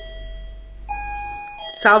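A chime ringing in steady held tones that change to a different note about a second in, over a faint low hum.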